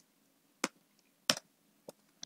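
Computer keyboard keystrokes: three separate faint key clicks, evenly spaced a little over half a second apart.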